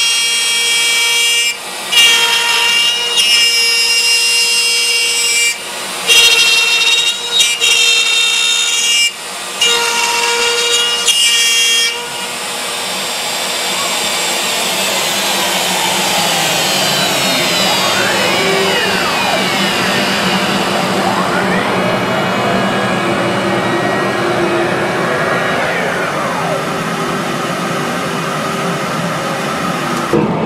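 CNC router spindle cutting a heart-shaped pocket in wood, a steady whine with a few brief breaks in the cut. About twelve seconds in the whine stops and gives way to a steady rushing noise with tones that sweep up and down, as the machine finishes and moves off the part.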